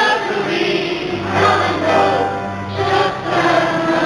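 Live pop band playing a slow song with sung vocals, electric guitar and a sustained low note that changes twice, recorded from the audience.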